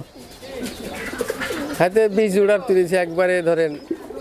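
Domestic pigeons cooing, with a man's voice talking over them for the second half.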